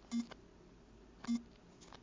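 Two short, low, buzzy electronic beeps about a second apart, each a steady tone that starts and stops sharply.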